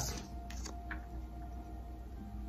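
Soft background music with long held notes, with a few faint clicks from tarot cards being handled and picked up in the first second.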